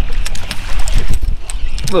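Steady wind rumble on the microphone, with a run of short sharp clicks and splashes as a small hooked redfish thrashes at the surface beside the boat.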